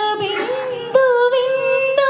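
A high voice singing a devotional prayer song, holding long notes: one gliding note, then a new steady note taken up about a second in.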